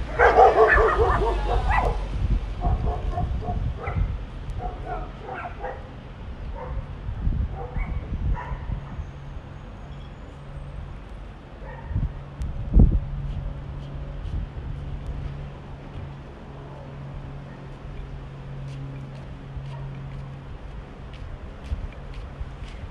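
Dogs barking: a loud run of barks in the first two seconds, then scattered fainter barks for several seconds more. A steady low hum comes in near the middle, with two sharp thumps around then.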